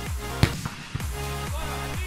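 Background electronic dance music with a steady thumping kick drum, about two beats a second. A single sharp knock about half a second in is the loudest thing, and the music thins for a moment after it.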